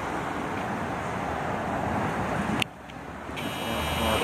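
Steady city street traffic noise, with a sharp click about two and a half seconds in after which the sound drops quieter, and a faint high whine near the end.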